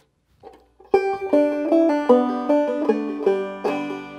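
Five-string banjo played clawhammer style: a short melodic phrase of separate plucked notes that ring over one another, starting about a second in after a brief pause.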